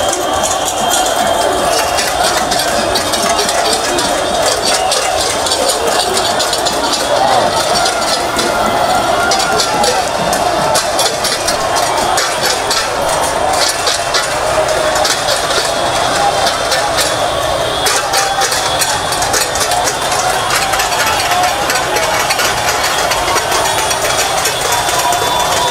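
A large street crowd shouting and singing together in a steady, unbroken din, with many sharp clicks and clinks throughout.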